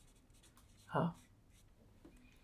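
Marker pen writing on a whiteboard: faint strokes, with one spoken word about a second in.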